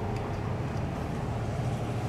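Steady low drone of a boat's engine, an even hum without any sharp knocks or changes.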